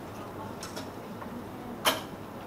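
Plastic draw ball being twisted open by hand: a few faint clicks about half a second in, then one sharp click near the end as it opens.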